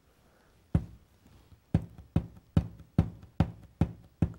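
A lump of modelling clay, shaped as a penguin body, being tapped on a tabletop to flatten its base: one knock about a second in, then a run of knocks, about two to three a second.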